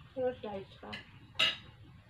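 Tableware clinking at a dinner table: one sharp, bright clink about one and a half seconds in, with a short spoken phrase just before it.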